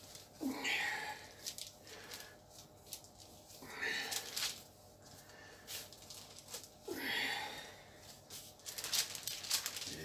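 Bread dough being shaped by gloved hands on paper, with soft rustling and crinkling that grows busier near the end. A man's audible breaths come about every three seconds.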